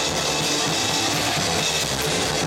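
Live rock band playing loudly: drum kit, electric bass and electric guitars, heard from on stage beside the bass player.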